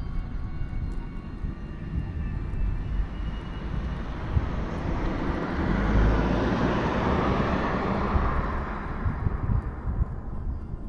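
Rushing noise of an aircraft flying past, swelling about six seconds in and fading near the end, over a steady low rumble.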